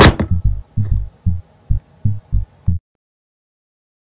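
A window slams shut with one sharp bang at the start, over a rapid low thumping of about three to four beats a second. The thumping stops abruptly about three seconds in, and the sound cuts to silence.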